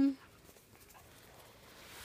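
A girl's voice trails off on a falling pitch, then near silence with only faint background hiss.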